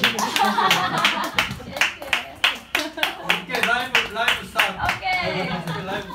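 A small audience claps by hand, with scattered, irregular claps, while people talk over the clapping.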